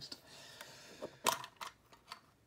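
Small metal mini tin handled and turned over in the hand: a soft rubbing at first, then a sharp click a little over a second in and a fainter click just after.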